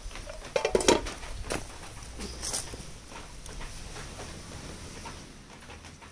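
A pot of soup bubbling over a strong wood fire, with small crackles and clicks from the burning wood. A louder clatter comes just under a second in and a sharp knock about a second and a half in.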